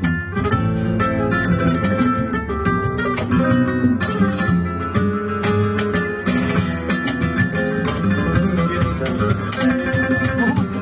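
Flamenco guitar playing a solea por bulerías: a dense, unbroken stream of plucked notes with sharp, percussive attacks.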